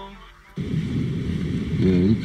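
The tail of a song fades out. About half a second in, a steady low rumble of a car's interior, engine and road noise, cuts in suddenly. A voice begins near the end.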